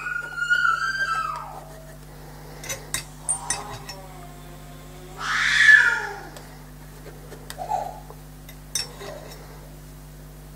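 A pet cat meowing twice: a drawn-out meow falling in pitch at the start, and a louder one about five seconds in. A few light taps of a palette knife on paper come in between.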